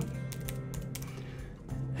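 Computer keyboard typing a short word, a quick run of key clicks.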